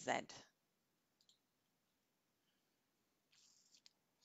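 Faint computer mouse clicks in a quiet room: a small tick about a second in, then a short rustle ending in a sharp click near the end.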